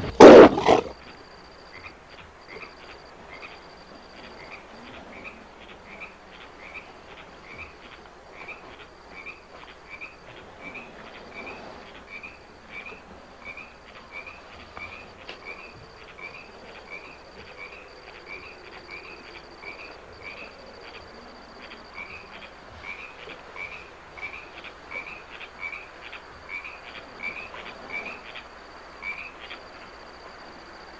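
A loud burst cuts off in the first second. Then night-time pond ambience follows: frogs calling in short chirps, about two a second, over a steady high insect trill.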